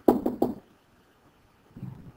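A pen stylus knocking on a tablet screen during handwriting: three or four quick knocks within the first half second, then quiet, with a faint low sound near the end.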